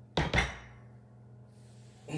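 Loaded barbell set down on a wooden floor during a deadlift rep: two quick knocks of the plates a fraction of a second apart, with a short ring after.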